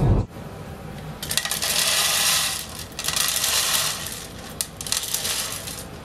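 A cat eating dry kibble from the plastic bowl of a gravity food feeder: the kibble clatters and crunches in two longer spells, with scattered clicks between.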